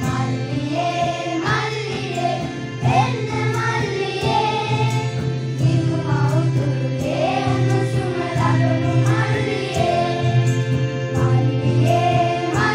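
A boys' school choir singing together on stage, with instrumental accompaniment holding steady low notes under the voices.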